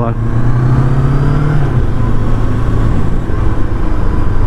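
Macbor Montana XR5's parallel-twin engine running under way at low speed, its note dropping in pitch a little under two seconds in as the revs fall.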